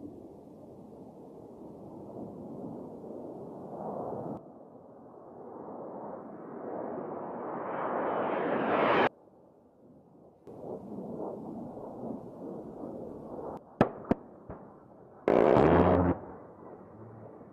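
A-10 Thunderbolt II jet passes with its twin turbofan engines: the jet noise swells and climbs in pitch as an aircraft closes in, then cuts off abruptly. After a short lull another pass follows, with two sharp cracks and a loud burst near the end.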